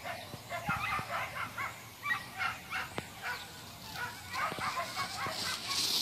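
Excited dogs yapping and barking repeatedly in short, high yelps. Near the end comes a rush of hiss.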